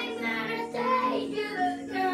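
A child singing a slow pop song over backing music, the voice holding and bending notes from phrase to phrase.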